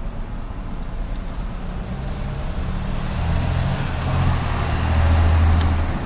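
A motor vehicle passing on the street: a low engine rumble that builds from about two seconds in, is loudest near the end, and eases off as it goes by.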